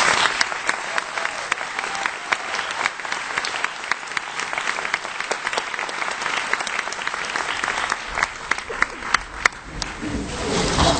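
Audience applauding: a dense spread of many hands clapping, thinning to scattered separate claps near the end.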